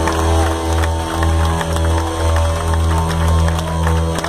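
Live gothic rock band playing loud, with deep bass notes that change about twice a second under sustained guitar chords.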